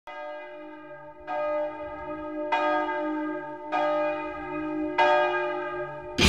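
A single large bell tolling slowly: five strikes about a second and a quarter apart, each ringing on into the next.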